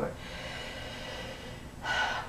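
A soft, steady breath, a long intake of air between spoken phrases, with a woman's speech starting again near the end.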